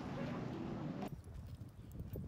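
Wind rumbling on the microphone, which stops abruptly about a second in, leaving a much quieter outdoor background with a few soft low knocks.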